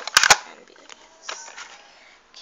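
Several sharp plastic clicks in quick succession in the first half second, then quieter handling sounds, as a movable part of a plastic Barbie bathroom playset is shifted into position.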